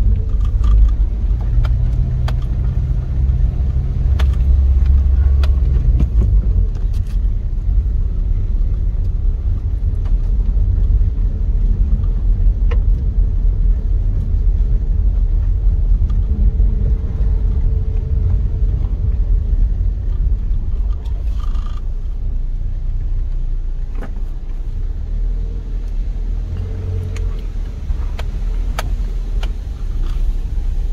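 Car driving slowly, heard from inside the cabin: a steady low rumble of engine and tyres on the road, with a few short knocks and rattles along the way.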